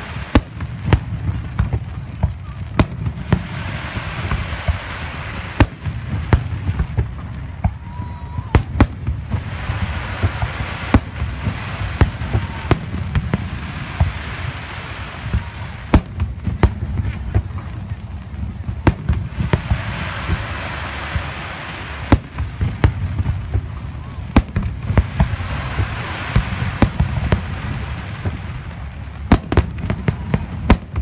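Aerial fireworks shells bursting in a rapid, irregular string of sharp bangs over a continuous low rumble.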